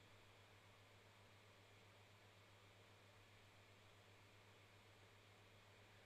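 Near silence: a faint steady hiss with a low hum underneath.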